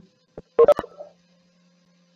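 A click and a short electronic tone on the video-call audio, followed by a faint, low, steady hum.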